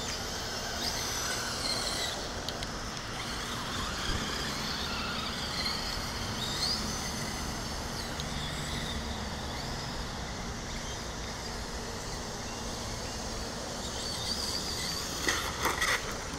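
Traxxas Slash 4x4 RC truck's brushless electric motor whining at a distance, with a few short rising whines as it speeds up, over a steady outdoor hiss.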